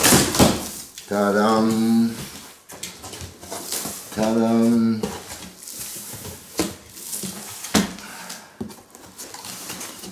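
Large cardboard shipping box being opened by hand: packing tape ripping at the start, then cardboard flaps scraping, rubbing and knocking, with two sharp knocks in the second half. Two held pitched tones, each about a second long, sound early and again near the middle.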